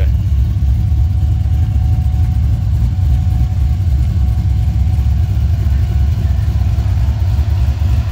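Twin-turbo LS3 V8 in a 1971 Chevelle idling with a steady, deep, low sound.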